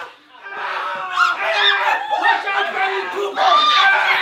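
Several people shrieking, yelling and laughing in shocked reaction, high overlapping cries with no words. They break off briefly at the start, resume about half a second in, and are loudest near the end.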